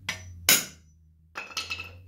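A claw hammer strikes a center punch held between bare toes once, a sharp metal-on-metal blow about half a second in, punching a mark nearly through a thin sheet-metal plate on a pine block. A quieter sound with a brief ringing tone follows about a second later.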